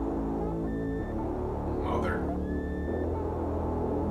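Slow, dark ambient background music: held low chords that change about a second in and again near three seconds, with a few thin high tones above.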